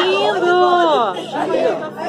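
People's voices talking excitedly, one voice drawing out a long call that falls away about a second in.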